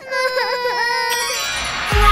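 A cartoon baby crying with its pitch dipping twice, then rising glides. Loud, upbeat theme music starts right at the end.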